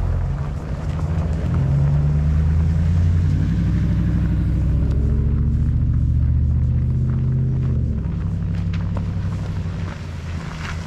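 Motor vehicle engine running close by, a low steady drone that swells about two seconds in and drops away at about eight seconds.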